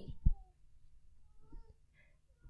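A woman's amplified voice breaks off right at the start, leaving a quiet pause broken by two faint, brief high-pitched calls about a second apart.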